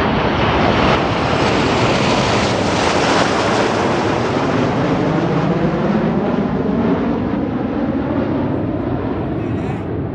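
Jet roar of Red Arrows BAE Hawk jet trainers flying past overhead, a loud continuous rush whose sound sweeps slowly as the aircraft pass, dulling and fading a little over the last few seconds.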